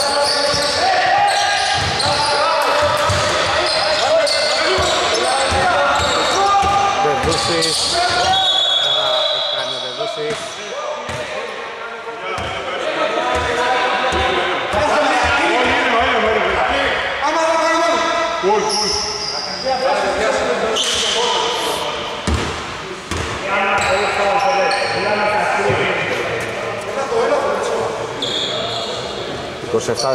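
A basketball bouncing on a wooden gym floor, with players' voices calling out and shouting across a large hall.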